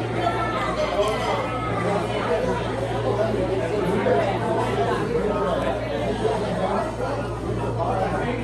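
Indistinct conversation of other diners in a restaurant dining room, over a steady low hum.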